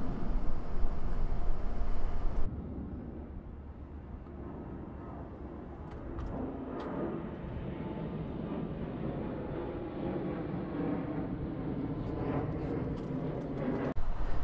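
Outdoor city street ambience. A loud, steady rushing noise cuts off suddenly about two and a half seconds in, leaving a quieter, steady low rumble of distant traffic.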